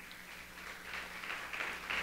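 A pause in speech: faint room noise with a steady low electrical hum, and a soft hiss-like murmur that grows slightly toward the end.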